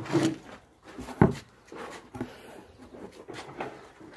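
Plastic basins knocking and clunking as they are taken down from a wooden rack. There is one loud, sharp knock about a second in and lighter knocks later.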